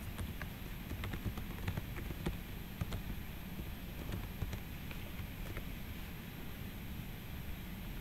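Computer keyboard typing: faint, irregular key clicks over a low steady background hum.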